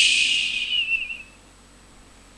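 A high whistling hiss with a thin steady tone in it, fading out over about a second and a half.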